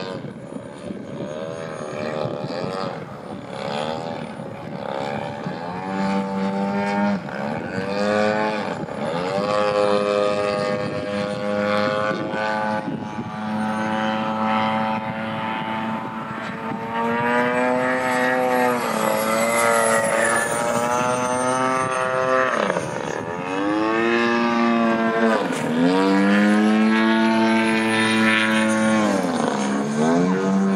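Radio-controlled aerobatic model airplane flying overhead. Its motor and propeller pitch rise and fall constantly with the throttle, with several sharp downward swoops as it passes by in the second half.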